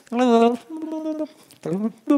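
A man making wordless, baby-like cooing noises with his voice: a few short held tones, one rising in pitch, imitating the sounds an infant and parent exchange.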